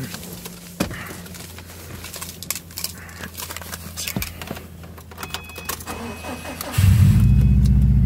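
Keys and small clicks and rattles, then, near the end, the 2008 Subaru WRX STI's 2.5-litre turbocharged engine starts suddenly and settles into a loud, steady idle.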